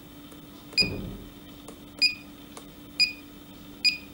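Four short high-pitched electronic beeps from the Analox Ax60+ central display's keypad, each one sounding as the Cycle button is pressed to step between sensors. The first press also gives a soft thump.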